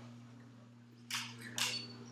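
Room tone with a steady low electrical hum and two brief soft hissing noises, about a second and a second and a half in.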